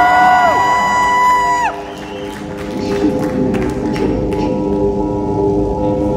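Live concert: a sustained synthesizer drone opens a rock song while the crowd cheers, with high held shouts from the audience in the first couple of seconds.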